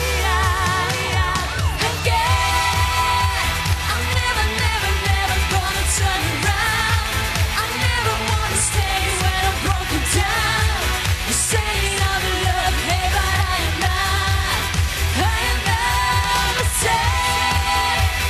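Pop-rock song played live by a band: a steady drumbeat with bass and electric guitar under a wavering lead melody.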